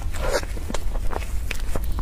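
Close-miked eating of a soft cream-filled mochi: biting and wet, sticky chewing, heard as a run of small irregular clicks and smacks.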